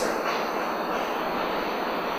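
Steady, even hiss of background room noise with no distinct events.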